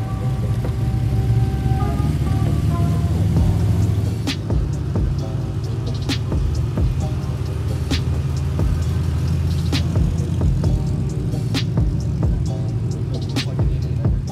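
Background music with a steady beat that comes in about four seconds in, over the low engine sound of classic sports cars driving slowly past: a 1984 Lamborghini Countach LP500S, then a 1967 TVR Tuscan.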